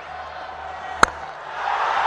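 Cricket bat striking the ball: a single sharp crack about a second in, over a low crowd hum that swells soon after. It is a clean, full strike that carries over the boundary for six.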